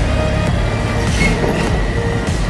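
Diesel engine of a Scania R540 truck pulling a tank trailer as it rolls slowly past, under background music with steady tones and falling bass sweeps.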